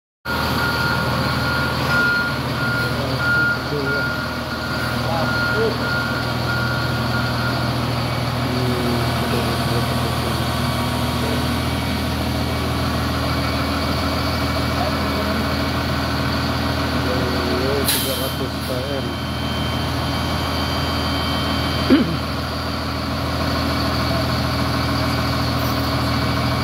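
XCMG LW300KN wheel loader's diesel engine idling steadily. A repeating electronic beep sounds for the first seven seconds or so, a sharp sound comes at about 18 seconds, and a single knock comes at about 22 seconds.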